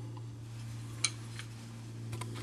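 Steady low hum with two faint small clicks about a second in, the first sharper than the second.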